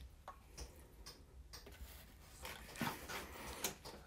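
Faint, irregular drips and small ticks of water falling from wet hands onto a potter's wheel.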